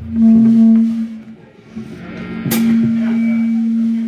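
A live band's amplified guitar holding a steady, ringing note, with loudness dipping briefly in the middle. A sharp hit sounds about two and a half seconds in.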